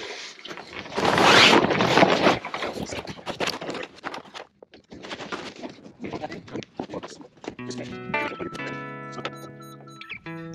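Rustling and handling noise, loudest for about a second and a half near the start, then scattered softer rustles and knocks. Background music with guitar comes in near the end.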